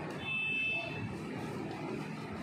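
A brief high-pitched electronic-sounding beep lasting under a second near the start, over low background noise.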